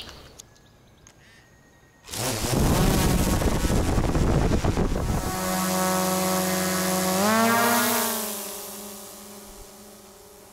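Small folding quadcopter drone taking off: its propellers start whirring suddenly about two seconds in, settle into a steady buzzing whine, rise in pitch as it climbs, then fade as it flies up and away.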